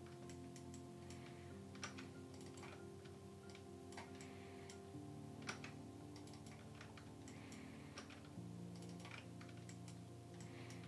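Faint, irregular clicking of a computer mouse and keyboard, a few clicks a second, over a low steady hum that shifts pitch a few times.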